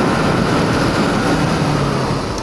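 Bajaj Pulsar NS200's single-cylinder engine pulling steadily as the motorcycle speeds up to around 50 km/h, with loud wind rush over the microphone.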